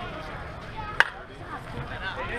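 A single sharp crack of a pitched softball striking something, about a second in, with a brief ring after it.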